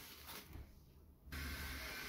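Faint room noise with no distinct event; it drops to almost nothing for a moment around the middle, then a faint low hum returns.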